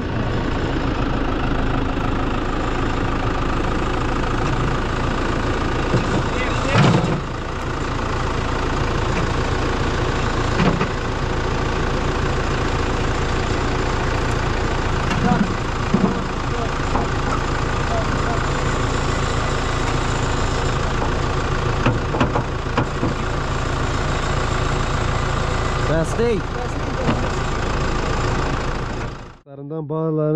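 Tractor diesel engine running steadily as the New Holland's front-loader bucket is used to press wooden fence stakes into the ground.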